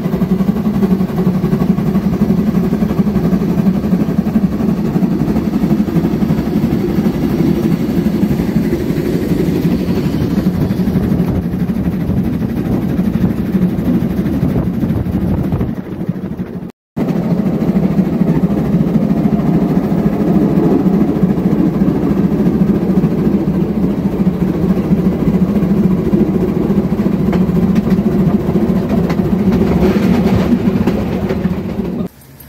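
Steady rumble of the Rügensche Bäderbahn's narrow-gauge steam train running along the line, heard from on board. The sound drops out for a moment about 17 seconds in, then carries on the same.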